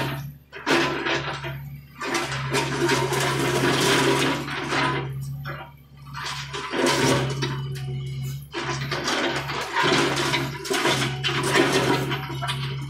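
John Deere 50D compact excavator's diesel engine running with a steady low drone, while the bucket digs and scrapes through dirt and broken concrete rubble in three noisy rushes of a few seconds each.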